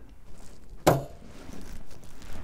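A single sharp click, with a brief low knock, a little under a second in: a replacement tailgate gas strut's end socket snapping onto its ball mount on a Tesla Model 3. Faint handling noise around it.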